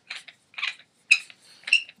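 A Planet Eclipse Etha paintball marker being handled, giving a series of short clicks and clinks, the sharpest about a second in and near the end.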